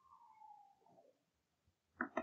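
Near silence: a faint, soft whistle under the breath, one falling note that fades out about a second in.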